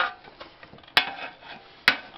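Two sharp metallic clinks just under a second apart, each ringing briefly.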